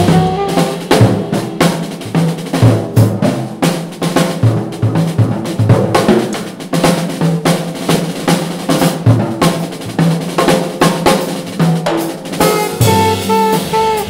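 Jazz drum break on a Gretsch drum kit: rapid snare, bass drum and cymbal strokes with the saxophone out. The alto saxophone comes back in about a second and a half before the end.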